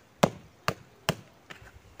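A hand knocking on the side of a plastic flower pot: three sharp taps about half a second apart, then a fainter one. The knocks loosen a potted Epidendrum orchid's root ball so it comes out of the pot.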